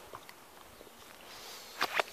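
Footsteps on grass and fallen leaves, with two sharp clicks close together near the end.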